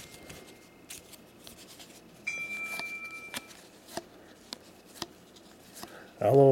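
Basketball trading cards being thumbed through by hand, with faint clicks of card edges. About two seconds in, a steady high-pitched tone sounds for about a second and is the loudest thing heard.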